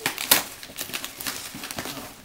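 Cardboard box and plastic packing being handled and pulled open: a quick run of sharp crinkles and crackles, the loudest about a third of a second in.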